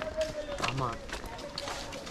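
Footsteps of several people walking on dry leaf litter, a scatter of irregular crunches and scuffs, with a faint steady tone behind them.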